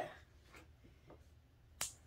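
A single sharp click near the end, after a couple of much fainter ticks, against a quiet room.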